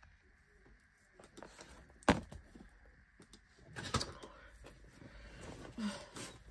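A single sharp tap about two seconds in, then soft knocks and rustling as a small wireless keyboard is handled and slid off an open ring-binder planner on a desk.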